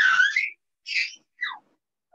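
A young child's high-pitched squeals in three short gliding cries: the loudest at the start, another about a second in, and a last one falling in pitch.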